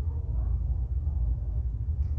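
Steady low background rumble, with no speech over it.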